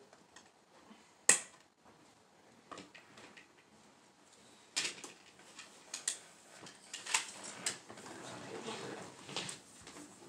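A sharp click about a second in, then, from about halfway, a run of irregular clicks, knocks and rustling, like objects being handled and set down in the room.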